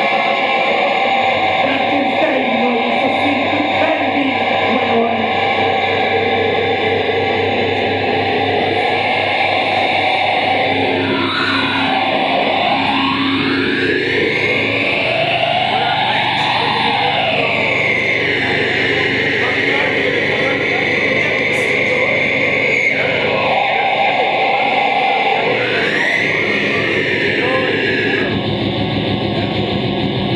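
Live experimental music: a loud, dense wall of layered drones and noise, with a tone that sweeps down and back up around the middle.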